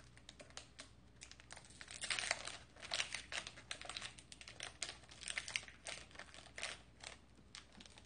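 Crinkling and small clicks of a thin packaging packet being handled and worked open in the fingers, coming in irregular bursts.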